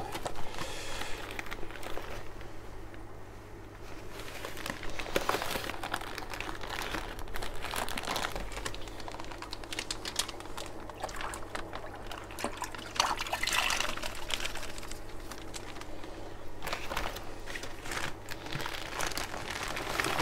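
Plastic fish shipping bag crinkling as it is handled and emptied into a plastic bucket of water, with water pouring and sloshing in irregular bursts.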